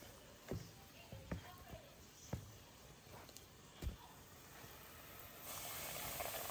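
A few faint, separate clicks and taps as a fork works chicken pieces through flour in a plastic bowl. Near the end, a steady sizzle of hot oil frying garlic cloves comes in.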